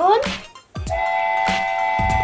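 Steam-train whistle sound effect for a toy train being switched on: one steady chord of several pitches that starts about a second in and holds, over background music with a beat.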